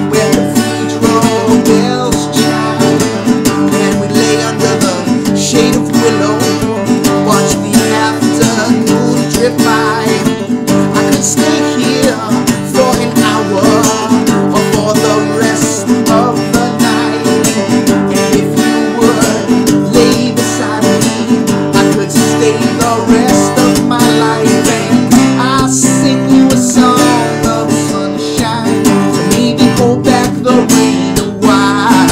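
Acoustic guitar strummed steadily in a pop song, with a man singing along.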